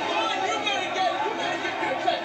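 Crowd chatter: many voices talking at once in a live event audience, with no single voice standing out.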